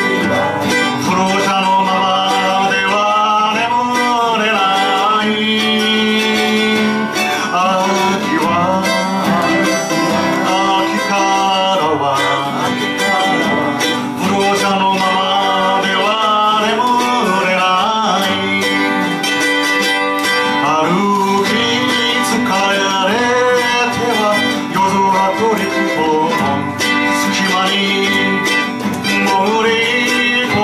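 A folk song on acoustic guitar and mandolin, with a man singing the melody over the two instruments.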